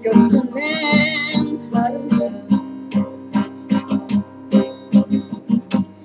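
Acoustic guitar strummed in a steady rhythm, with a woman's voice holding one wavering sung note about a second in.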